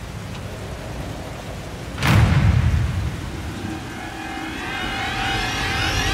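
Steady heavy rain on the street, with a deep rumble about two seconds in that is thunder-like. In the last two or three seconds a rising, wavering whine builds.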